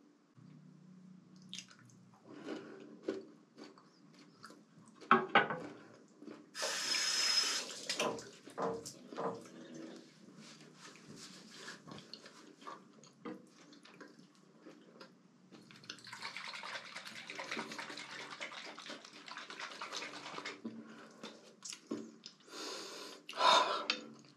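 Bathroom sink tap running and water splashing as the face is rinsed after a wet shave: a short spell of running water about seven seconds in, a longer one from about sixteen to twenty seconds in, with small splashes and drips in between.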